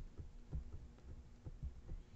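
Faint, irregular low taps and thumps of a stylus on a drawing tablet while a word is handwritten.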